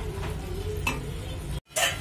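Tomatoes and green chillies sizzling in a pan as a metal spoon stirs through them, with a light tap of the spoon about a second in. Near the end the sound cuts out for an instant, then a louder clatter of the spoon against the pan.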